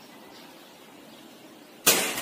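Quiet background, then near the end a single sharp crack of a hunting shot fired, briefly trailing off.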